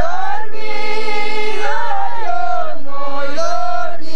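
A group of voices singing a folk song together in long, high held notes, with the pitch bending between phrases.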